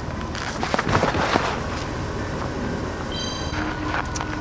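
A car's engine running, heard as a steady noisy rumble, with a brief high steady tone about three seconds in.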